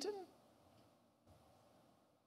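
The last word of a man's speech trails off with a falling pitch in the first moment, then near silence: room tone.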